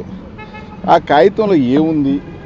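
A vehicle horn sounds once in the background, a steady tone of about half a second, followed by a man speaking.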